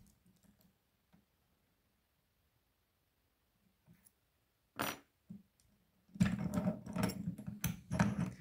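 Metal padlock being handled: after a quiet stretch, two sharp clicks about five seconds in, then a run of rattling and clicking near the end.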